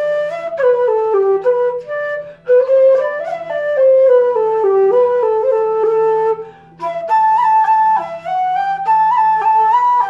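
Wooden Irish flute playing a traditional tune, a single melody line of quick stepping notes. About two thirds of the way in there is a short break for breath, after which the melody carries on in a higher register.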